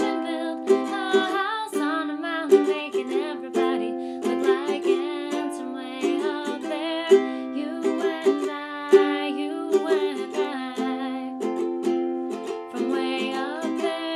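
Ukulele strummed in a steady rhythm of chords, with a woman's singing voice over it near the start and again near the end.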